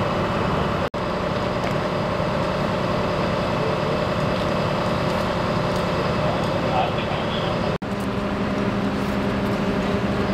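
Fire trucks' engines running steadily with an even hum, over indistinct voices. The sound drops out for an instant about a second in and again near the end, after which the low hum is stronger.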